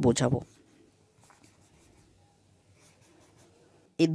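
A few faint pencil strokes scratching on drawing paper while small bush outlines are sketched, the rest nearly silent.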